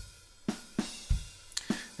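Groove Agent 5 Acoustic Agent sampled acoustic drum kit playing a looping rock groove from its Style Player: kick drum hits under a steady hi-hat and cymbal wash.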